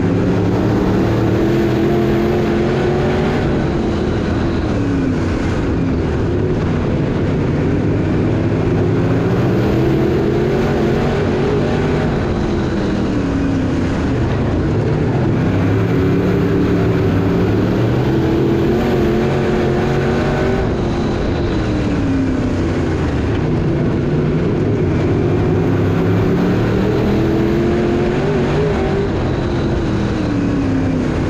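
A USRA B-Mod dirt-track race car's V8 engine, heard from inside the cockpit, running hard under race load. The revs drop off into each turn and climb again down each straight, about every eight seconds.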